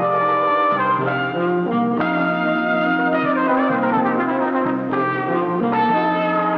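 Early-1970s Italian film-score music with brass, trumpets and trombones, playing sustained chords over a held bass, with a falling run of notes about three to four seconds in.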